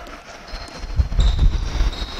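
A basketball dribbled and players running on a hardwood gym floor: low thuds and rumble that build from about half a second in.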